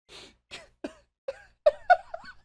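A man laughing: it starts as breathy, wheezing gasps and builds into short pitched bursts of laughter, the loudest near the end.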